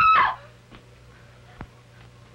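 A woman's held, high-pitched scream that cuts off a quarter second in, leaving a faint low hum and one soft knock about a second and a half later.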